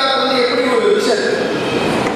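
A man speaking into a lectern microphone, his voice amplified and carrying through a hall.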